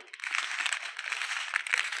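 Small clear plastic bags of square diamond-painting drills crinkling as they are handled and turned over, a continuous crackly rustle.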